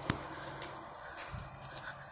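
Faint outdoor background noise with no distinct source. There is a single sharp click just after the start and a soft low thud in the middle.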